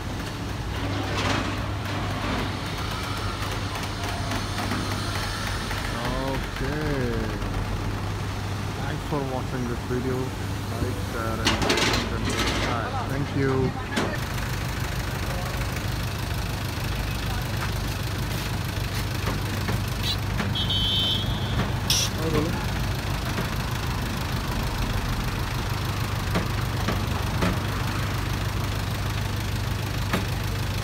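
Tow truck's engine running at a steady idle, a constant low hum, while the truck's crane and bed load an SUV. Voices talk over it for several seconds in the first half.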